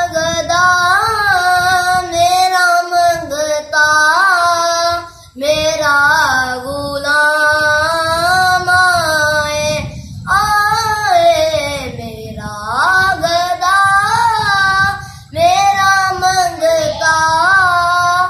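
A boy singing a naat solo with no instruments, in long drawn-out melodic phrases with ornamented held notes, pausing briefly for breath about every five seconds.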